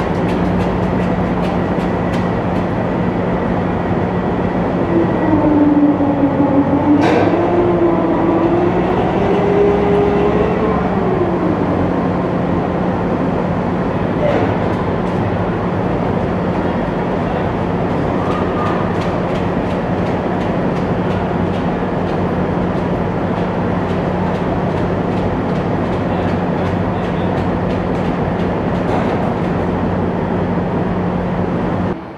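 Tracked AAV-7A1 amphibious assault vehicles driving across a steel ship's deck: steady diesel engine noise with continuous clanking of the tracks. A wavering whine rises and falls about five to twelve seconds in, the loudest part.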